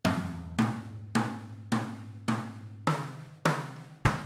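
Acoustic drum kit played slowly: single strokes about every 0.6 s around snare, toms and bass drum, each ringing briefly. It is a slow run-through of a right-left-left sticking with bass drum notes fitted between the hand strokes.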